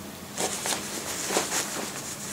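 Soft rustling and scuffing of a biker jacket's fabric as the wearer moves in it and handles it, a few brief brushes.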